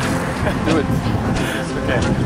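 A young man laughing and saying a couple of words, over a steady low rumble.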